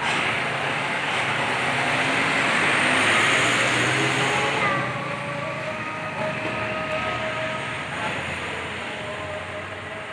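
A large bus driving past close by. Its engine and road noise swell to a peak about three to four seconds in, then slowly fade, leaving a few steady engine tones.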